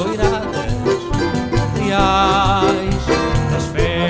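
Live band music: accordion, cavaquinho, keyboard and percussion playing a Portuguese folk tune set to a Brazilian dance rhythm, with a steady beat.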